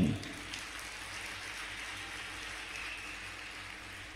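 Faint, steady applause from an audience, heard as an even patter during a pause in the speech.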